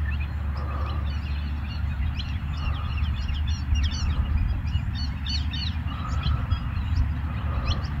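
Outdoor birds calling, many short chirps and tweets scattered throughout, over a steady low rumble.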